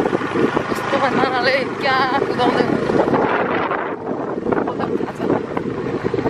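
Motorcycle running along a rough dirt track, its engine and road noise mixed with wind on the microphone. A voice calls out in a wavering pitch about one to two and a half seconds in.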